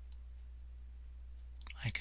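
Steady low electrical hum in a quiet room, with a faint click a moment in; a man's voice starts near the end.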